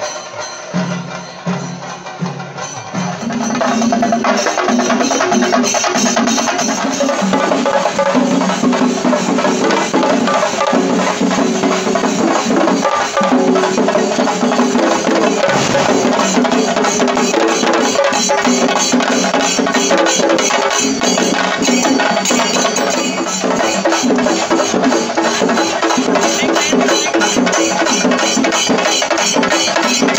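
Loud, fast percussion music with drums and rapidly clashing hand cymbals, growing louder about three seconds in.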